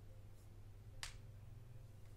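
Near silence over a low steady hum, with one small sharp click about a second in from hands handling a doll's head while putting earrings into its ears.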